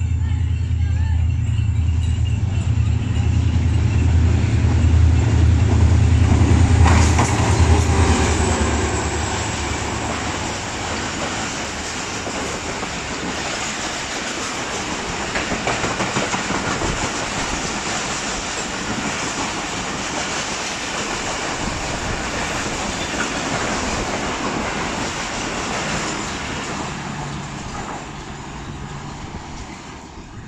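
An HGMU-30 diesel-electric locomotive passes close at speed, its engine a deep drone that builds to its loudest about seven seconds in. Its passenger coaches follow in a steady rush of wheel noise with clattering over the rail joints, fading near the end as the train runs through the station without stopping.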